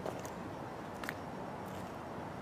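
Outdoor background ambience: a steady low rumble of distant noise, with a few brief high chirps, one about a second in.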